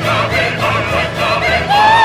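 Chorus and solo singers with orchestra in a zarzuela concertante, many voices singing together. Near the end a loud, held high note with vibrato comes in and carries on.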